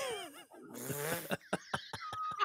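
A man laughing hard: a few pitched laugh sounds, then a breathy stretch, then a run of short gasping pulses near the end.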